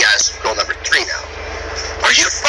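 A man's voice speaks briefly, then pauses about a second in, leaving a steady low hum and hiss of the truck cab.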